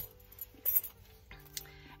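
Soft background music with held notes, and a set of house keys jingling briefly about two-thirds of a second in, with a fainter clink near the end.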